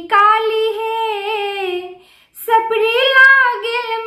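A woman singing a traditional Maithili Gauri geet, unaccompanied: two long, held, ornamented phrases with a short breath about two seconds in.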